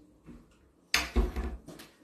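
A stainless-steel box grater being handled on a wooden cutting board: a faint knock, then a sharp knock about a second in, followed by a few lighter knocks.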